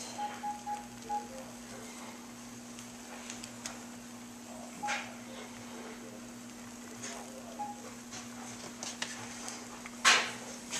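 Beaten eggs cooking undisturbed in a nonstick frying pan, a faint sizzle under a steady low hum. A row of short phone keypad beeps comes in the first second, and a few soft clicks follow later.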